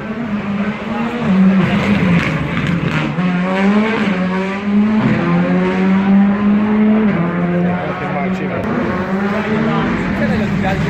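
Rally car engine revving hard on the stage, its pitch held high and stepping down and up every second or two as it changes gear and lifts.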